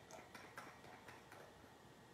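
Faint, irregular clicks of a small jar's screw lid being twisted open.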